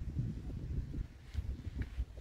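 Wind buffeting the microphone: an irregular low rumble that rises and falls, with a couple of faint ticks near the end.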